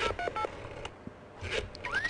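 Telephone keypad touch tones (DTMF) beeping in quick succession for about half a second, as if a number is being dialled, then a short quiet gap before a voice begins near the end.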